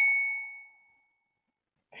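A single bright chime-like ding, struck once with a clean ringing tone that fades out within about a second, followed by silence.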